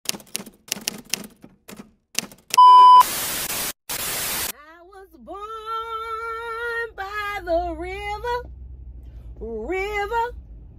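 A rapid series of typewriter-like clicks, then a loud, steady electronic beep and two bursts of static hiss. After that, a woman sings long held, wavering notes inside a car, with a low engine hum under her voice from about seven seconds in.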